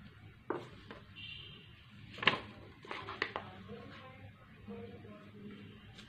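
Paper-craft handling noises on a desk: a few sharp clicks and taps, the loudest about two seconds in and a small cluster around three seconds, as a glued paper cutout is handled and pressed into place.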